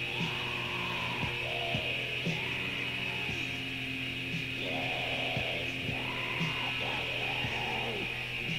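Lo-fi raw black metal from a 1992 cassette demo: a dense wall of distorted guitar over a steady low drone, with drum strikes about once a second.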